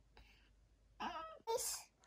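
Near silence, then about a second in two short, high-pitched snatches of a person's voice.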